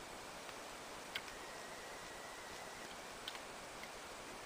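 Faint, quiet outdoor ambience: a steady soft hiss with a few brief, soft clicks scattered through it.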